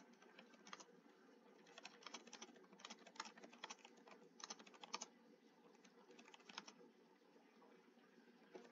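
Faint typing on a computer keyboard: quick, irregular keystroke clicks in bursts, thinning out in the last few seconds.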